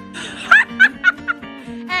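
A person laughing in four quick bursts in the first half, over background music with a plucked guitar; a short shouted "hey" comes at the end.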